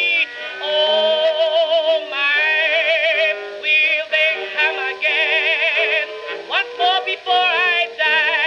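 A 1922 acoustically recorded Okeh 78 rpm record of a blues contralto with orchestra playing on a turntable. The sound is thin, with no bass and no top, and the melody lines have strong vibrato. A note slides upward near the end.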